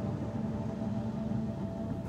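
A steady low drone with a few held higher tones.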